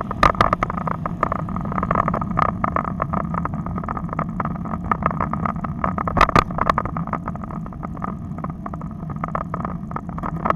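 Riding noise from a bicycle-mounted Garmin camera: a steady rumble of road and wind with frequent rattling clicks from the bumpy ride, and a sharper pair of knocks about six seconds in.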